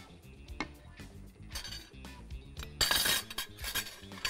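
Metal kitchen utensils clinking against metal cooking pots and pans, with a few light clinks and then a louder clatter about three seconds in, over faint background music.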